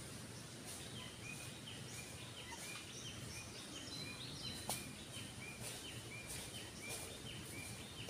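A bird calling over and over, short notes that drop in pitch, a few each second, against faint forest background. A few soft crunches of footsteps on dry leaf litter come in the second half.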